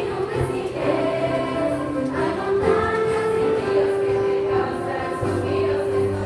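A choir of eighth-grade students singing in harmony, holding long notes, with instrumental accompaniment.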